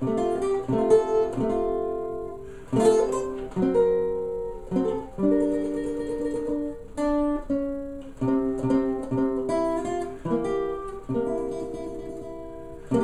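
Custom OME tenor banjo with a 12-inch head and 17-fret neck, played with a pick: strummed chord-melody of a slow jazz standard, sharp attacks on each chord, with a few longer held chords about five to seven seconds in.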